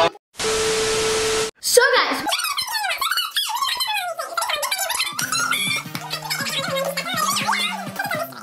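A burst of static-like noise with a steady hum through it, about a second long, cut in as an editing sound effect. Then fast-forwarded speech, sped up into quick, high-pitched chatter, with background music coming in about halfway through.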